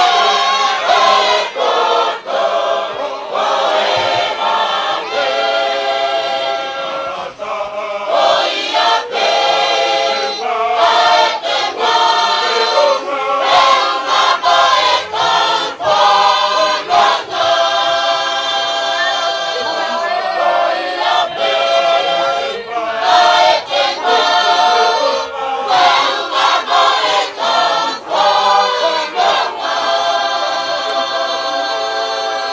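A choir singing, with held sung notes and short breaks between phrases.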